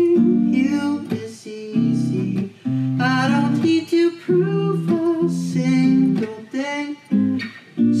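Acoustic guitar played in rhythmic chords, with a young man's voice singing over it in phrases.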